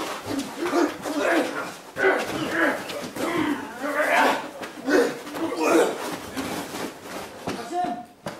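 People's voices talking and calling out over one another, the words not made out.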